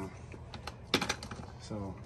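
A quick run of sharp clicks and taps about a second in, from hands handling the threaded PVC condensate drain fitting and the Teflon tape, over a low steady hum.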